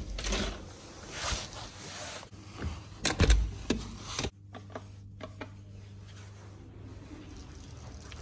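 Handling and rustling as a hotel room door with a key-card lock is opened and let shut. It closes with a heavy thud a little after three seconds in, locking the door behind him. After that there is a steady low hum with a few faint clicks.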